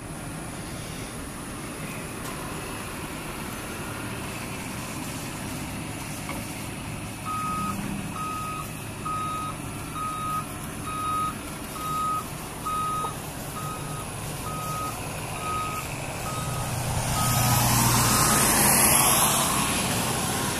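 A vehicle's reversing alarm beeping at about one beep a second, starting about seven seconds in and stopping shortly before the end, over a steady low rumble. A louder rush of noise swells near the end.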